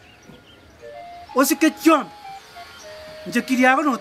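Two short, loud spoken phrases in a language the transcript missed, over quiet background music of simple held notes.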